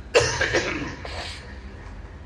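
A man coughs: a sudden sharp cough just after the start that dies away within about half a second.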